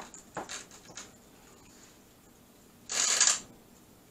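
A few light clicks of a spoon, then a loud rustling scrape lasting about half a second near the end, from macaroni and cheese being spooned out of a disposable aluminium foil pan.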